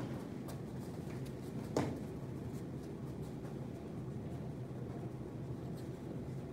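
Room tone: a steady low hum with faint scattered ticks, and one short knock about two seconds in.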